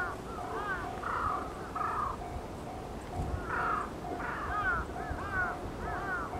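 Level-crossing warning alarm ringing, one steady tone pulsing about twice a second. Over it, birds are calling with curving calls and harsh caws.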